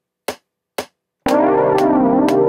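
Metronome count-in clicks at 120 BPM, one every half second, then about a second and a quarter in a sustained keyboard chord from a software instrument starts, with the metronome still clicking over it. The chord is triggered from a single key through Reason's Scales & Chords player.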